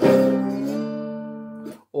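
Metal-bodied resonator guitar in open G tuning: a chord struck across the strings with a slide resting on them rings out and slowly dies away. The pitch bends up slightly just before the strings are stopped short.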